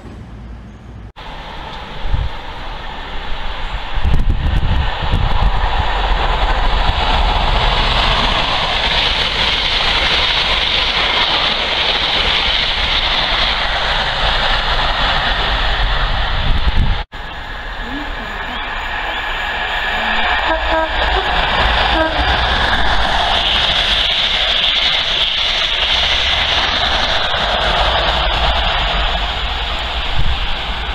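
Class 43 HST diesel power cars and coaches passing through stations at speed: a loud, steady rush of engine and wheel noise. It cuts off suddenly about 17 seconds in, then another train's noise builds up again.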